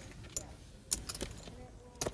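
Poker chips clicking against each other as they are handled at the table: a few sharp, separate clacks.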